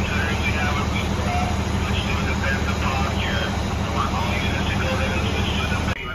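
A fire engine's diesel engine running steadily, a low, even drone, with voices over it.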